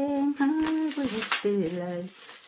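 A woman humming a tune in held notes that step up and down in pitch, with a few crackles of bubble wrap being handled.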